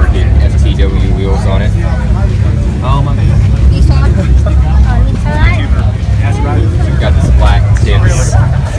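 A car engine idling with a steady low rumble, under the voices of people talking nearby.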